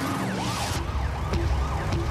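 Several police sirens wailing in overlapping rising and falling sweeps, over a steady low rumble of engines during a car chase.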